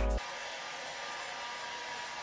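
Handheld hair dryer blowing a steady rush of air onto a canvas to dry the acrylic paint. Music cuts off just after the start, leaving the dryer alone.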